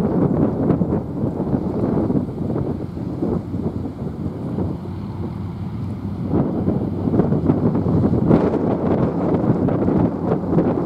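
Wind buffeting the microphone: a gusty rumbling noise that eases for a couple of seconds around the middle and then picks up again.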